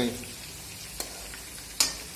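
Stuffed bitter gourds frying in hot oil in a metal kadai, a steady sizzle. A utensil ticks once against the pan about a second in, then clatters more loudly near the end as the gourds are turned.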